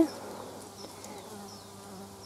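A flying insect buzzing faintly, a low hum that comes and goes.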